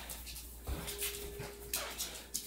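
Jack Russell terrier whining softly for about a second, over short scuffling and rustling from the dog and the torn stuffed toy.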